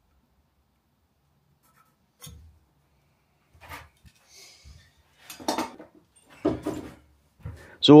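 Hand tools and wood being handled on a workbench: a few light clicks, a short scrape, then two louder knocks in the last few seconds.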